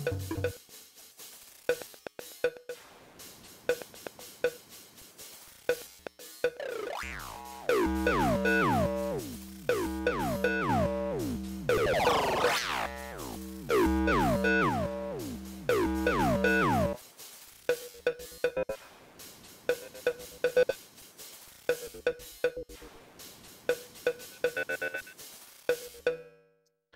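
A drum-machine loop played through the AudioBlast Blast Delay plugin while its presets are switched. From about seven seconds in, the delay echoes pile up into a dense run of repeating pitched tones that keep sliding down in pitch, with one rising sweep in the middle. The plain beat returns for the last third and stops at the very end.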